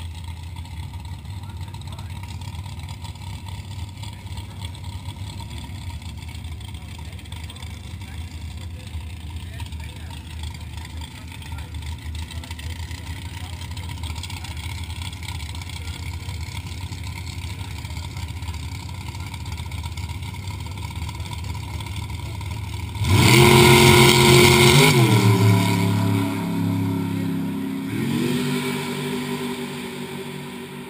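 Drag race cars idling with a low steady rumble, then launching off the line at full throttle: a sudden loud engine blast about three-quarters of the way through, its pitch stepping down and climbing again at two gear shifts as the cars pull away down the strip and fade.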